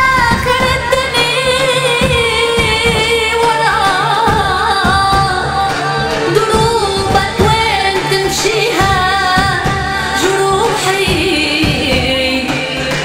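A woman singing an Arabic song into a microphone in an ornamented, wavering melodic line, over band accompaniment with a steady drum beat.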